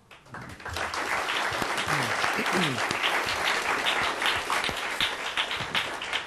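Audience applauding. The clapping builds over the first second and then holds steady.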